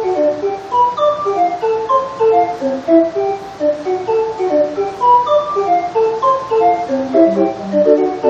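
A 20-note hand-cranked street organ playing a punched music roll: a quick melody of short pipe notes over chords, with lower bass notes coming in near the end.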